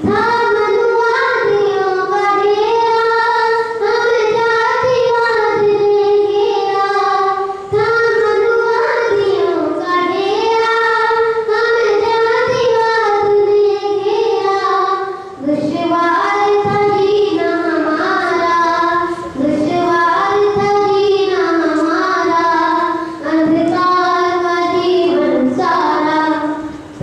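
A boy singing solo into a handheld microphone, holding long notes with brief breaks between phrases.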